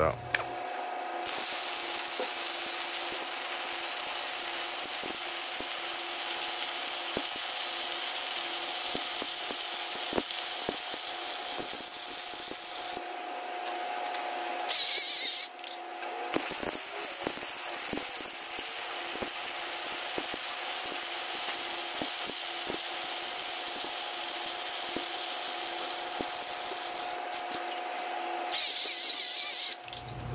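MIG welding arc running with a steady crackling hiss as weld passes are laid along steel plate seams. The arc stops briefly twice a little before halfway, then carries on.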